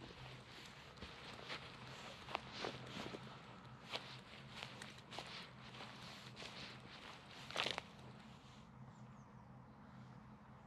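Footsteps on a forest floor of dry leaves, pine needles and moss: irregular light crunching and rustling, with one louder crackle about seven and a half seconds in. A faint steady low hum runs underneath.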